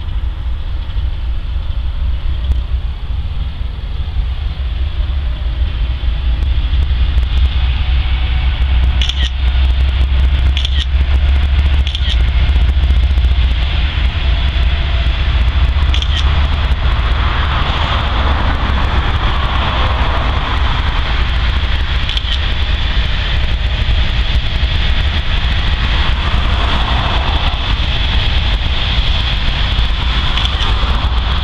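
A Norfolk Southern diesel freight locomotive passing at close range. Its low engine rumble is loudest about ten seconds in. After it goes by, tank cars and covered hopper cars roll past with a steady rolling noise of steel wheels on rail and scattered clicks.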